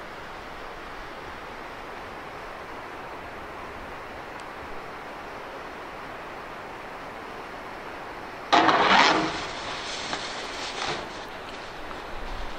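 Steady outdoor background hiss, then about eight and a half seconds in a sudden loud rush lasting about a second and tailing off with a few smaller knocks: a snowboard landing and sliding on packed snow.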